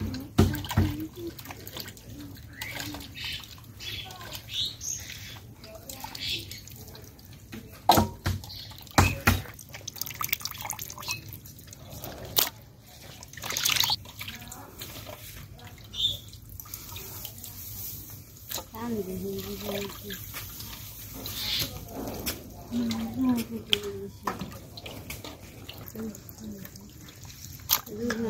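Raw chicken pieces being washed by hand in a steel bowl of water: irregular splashing, sloshing and dripping, with scattered sharp knocks from the pieces and the metal bowls.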